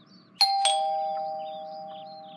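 Two-tone doorbell chime, ding-dong: a higher note, then a lower one a quarter second later, both ringing on and slowly fading, as a visitor arrives at the door.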